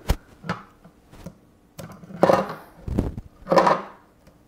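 Handling noise from a plastic telescope-mount housing and its wiring: a few sharp clicks and knocks, then two short bouts of rustling and scraping as the loose cover and cable harness are moved.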